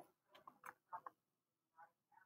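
Near silence: quiet room tone with a few faint, short ticks.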